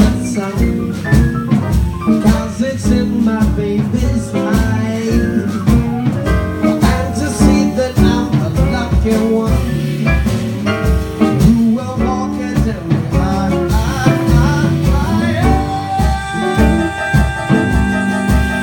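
Live jazz-blues band playing: grand piano, upright double bass and drum kit over a steady beat. A long held note comes in near the end.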